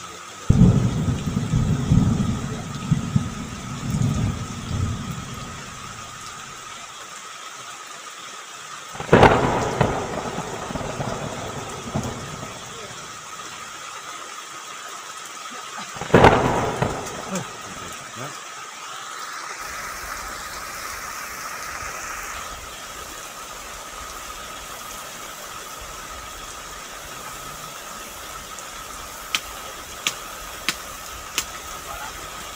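Heavy rain hissing steadily through a thunderstorm. A low rolling rumble of thunder fills the first several seconds. Two sharp thunderclaps follow, about nine and sixteen seconds in, each dying away in a rumble.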